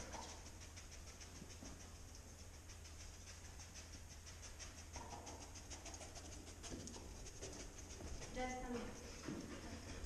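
A dog sniffing fast along metal lockers, short quick sniffs about five or six a second, as it searches for a target scent. A brief voice-like sound comes near the end.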